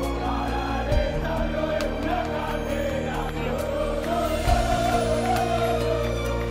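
Many voices singing together over steady sustained music.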